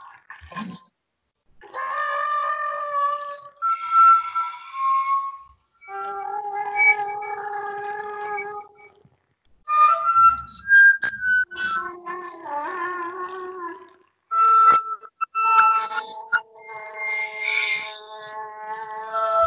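Piccolo played in a free contemporary style: phrases of held notes, often with two or more tones sounding together, some wavering, broken by short silences and a few sharp clicks.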